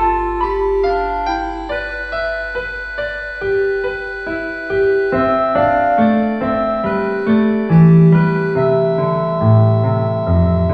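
Slow, lyrical piano music played as a theatre score, a melody of held notes over soft chords. Deeper bass notes come in about halfway through.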